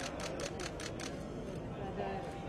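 A camera shutter firing in a rapid burst: about seven sharp clicks, evenly spaced, in the first second.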